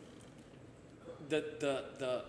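A pause in a men's conversation, with only faint room tone, then a man starts speaking about a second in.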